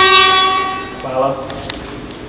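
A steady buzzing tone with many overtones, holding one pitch and fading out about a second in. It is followed by faint voices and a couple of light clicks.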